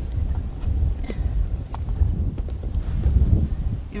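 Wind buffeting the microphone, a steady low rumble, with a few faint small clicks.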